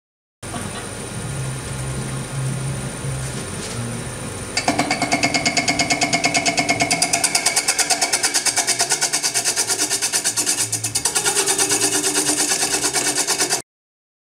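Wood lathe spinning a hollow form at about 800 rpm, then, about four and a half seconds in, a radius cutter on a hollowing bar engages the inside wall, giving a rapid, even rhythmic chatter with a ringing whine. The cut is interrupted on every turn by the window sawn in the vessel's side. It cuts off suddenly near the end.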